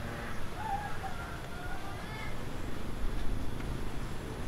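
Outdoor ambience: a low rumble of wind on the microphone, with a few faint, short bird calls about half a second in and again about two seconds in.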